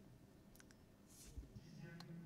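Near silence: faint room tone with a couple of soft clicks.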